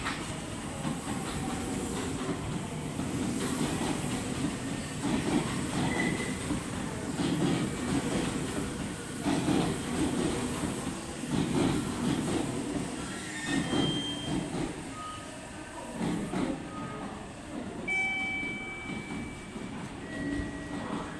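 Meitetsu 2200 series electric train moving past the platform, its wheels rumbling over the rail joints in repeating surges. Brief high-pitched wheel squeals come in the last few seconds.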